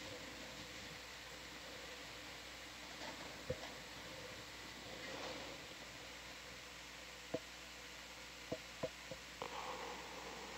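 Faint steady hiss and a low hum from an open intercom line, broken by a few short clicks: one about three and a half seconds in and a cluster in the last few seconds.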